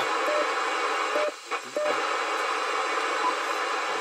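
Cobra CB radio's speaker hissing with static while its weather-band channels are stepped through: no station is received on these channels. The hiss dips briefly about a second and a half in, and a few short tones sound during it.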